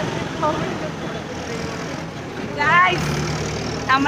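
A group of people's voices outdoors over a steady background rumble, with one voice calling out briefly about two and a half seconds in.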